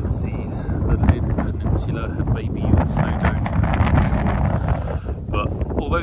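Strong wind buffeting the phone's microphone, a loud low rumble that surges and dips with the gusts.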